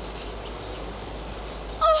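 Steady background hiss with no distinct events, then a woman's shrill exclamation begins near the end.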